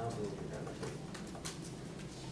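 Low, indistinct murmur of a voice near the start, with scattered light clicks over steady room noise.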